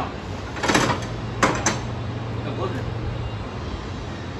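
The deck-lift handle and gearing of a Wright Stander ZK stand-on mower clunking as the 72-inch deck and engine are lowered. There is a rattling clunk about a second in, then two sharp clicks close together.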